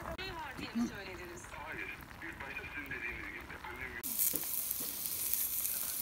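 Chicken breasts sizzling on a metal grill grate over a campfire, a dense hiss that begins abruptly about two-thirds of the way in. Before it, only faint voices are heard.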